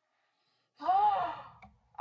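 A woman's single breathy, nervous vocal sound, between a sigh and a gasp, starting about a second in, its pitch rising and then falling.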